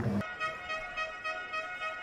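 Quiet background music: held notes over a softly pulsing note.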